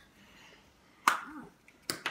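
Two sharp plastic clicks as a plastic Easter egg is pried apart: one about a second in, the other near the end.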